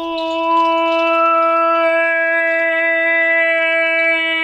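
A single long held musical note at a dead-steady pitch, rich in overtones, swelling in loudness over the first half-second.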